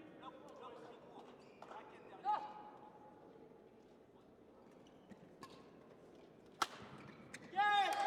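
Badminton racket strikes on a shuttlecock in a quiet sports hall: a few light clicks, the sharpest about six and a half seconds in, as a short rally is played. A brief call about two seconds in and a louder shout near the end.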